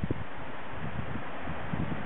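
Wind buffeting the camera's microphone: a steady rushing noise with an irregular, gusty low rumble.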